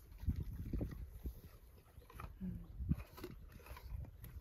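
Horse chewing an apple taken from a hand, with irregular crunches and low thuds close to the microphone.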